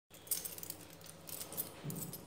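Keys jingling faintly in a few short spurts, with a low steady hum underneath.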